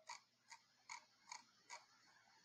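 Faint clicks of a computer mouse, about five evenly spaced at a little over two a second, as a web page is scrolled.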